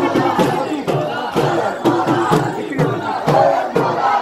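Crowd of mourners chanting in unison while beating their chests in matam, the hand slaps landing in a steady rhythm of about two a second.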